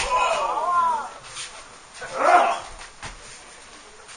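Two wordless vocal cries: the first lasts about a second at the start, the second is shorter and comes about two seconds in.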